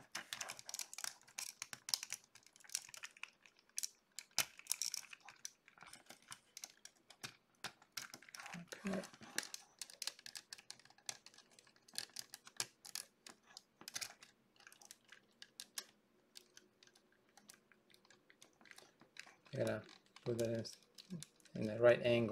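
Plastic parts of a Sentinel VR-052T 1/12-scale transformable motorcycle figure clicking and rattling as they are handled and fitted into place, in many small, irregular clicks.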